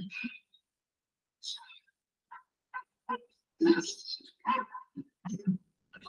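Short, broken bursts of off-screen voices and cries from a film soundtrack playing in the room. They cut in and out with silent gaps between them and grow louder in the second half.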